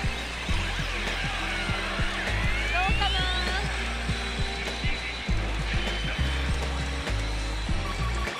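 Pachinko machine's electronic music and sound effects playing over a rapid patter of small clicks, with a rising sweep about two seconds in.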